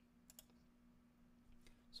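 Near silence with a faint steady hum, broken about a third of a second in by two quick clicks of a computer mouse.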